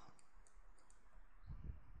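Near silence with a few faint, short clicks in the first second, and a faint low sound about a second and a half in.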